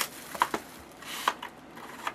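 Hands handling a cardboard trading-card box, stripping off its plastic shrink wrap and opening the lid: a few light clicks and rustles.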